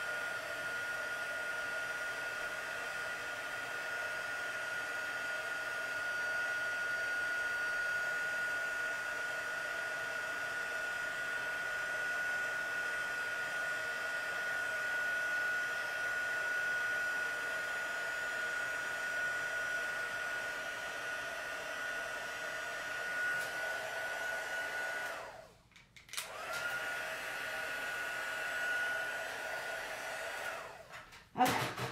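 Craft embossing heat gun running with a steady blowing hiss and a high fan whine while it melts gold embossing powder. It cuts out for about a second near the end, then starts again.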